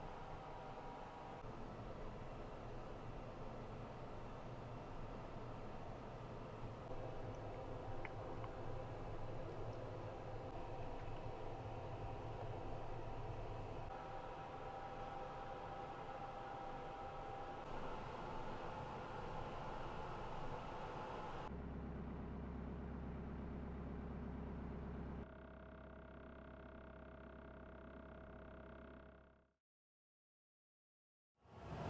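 Faint steady hum and room tone inside a parked camper van, its character changing abruptly at each cut between shots, then fading out to silence near the end.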